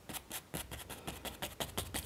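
Paintbrush bristles scratching over canvas as oil paint is worked on in quick short strokes, several a second.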